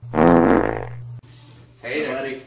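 A loud, low fart lasting about a second, ending abruptly.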